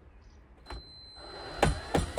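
Cordless drill-driver motor running as it backs out a screw from the underside of a robot mower, starting about a second in with a thin high whine, with two sharp knocks near the end.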